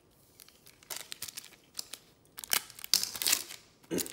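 Wrapper of a trading-card pack being opened by hand: a few light crackles, then louder crinkling and tearing about two and a half seconds in.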